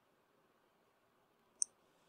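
A pause with only faint room tone, broken by one short, sharp click about one and a half seconds in.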